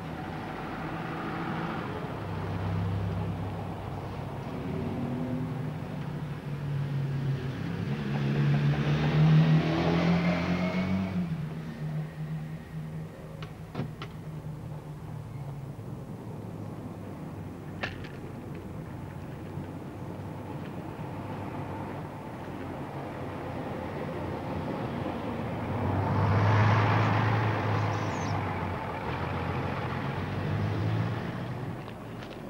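Street traffic: two cars pass close by, the first about eight to eleven seconds in and the second near the end, each swelling up with engine hum and tyre noise and then fading away. A few light clicks come in between.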